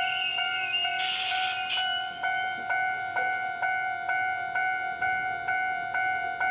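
Japanese railway level-crossing warning bell ringing steadily at about two strikes a second. A short burst of hiss comes about a second in.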